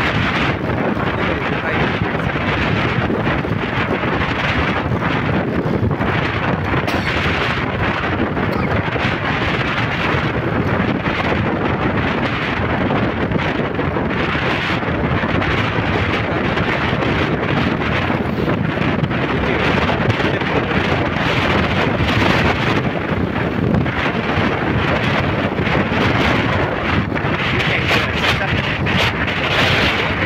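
Steady wind rushing over the microphone of a moving motorbike, loud and even throughout.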